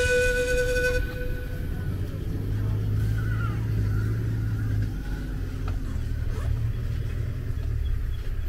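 Safari game-drive vehicle's engine running with a low, steady rumble. Background music trails off in the first second.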